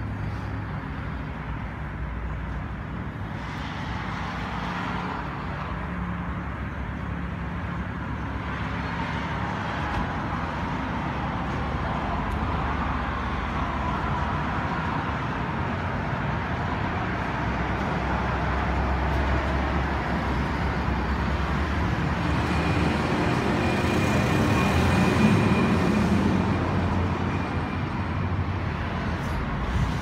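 Steady background rumble of road traffic and engines, slowly growing louder and peaking a few seconds before the end.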